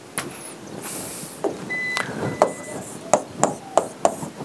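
Scattered sharp taps and knocks of a stylus and hand on an interactive whiteboard's touchscreen as a new page is opened and writing begins, with a brief steady high beep about two seconds in.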